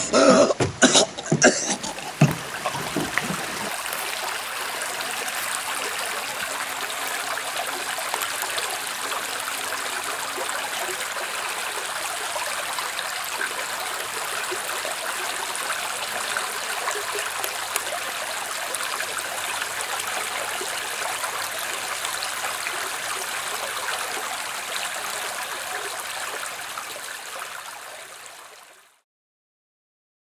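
A few loud, short throat sounds from a person, like coughing or gasping, in the first two seconds or so, then the steady rush of creek water running, which fades out near the end.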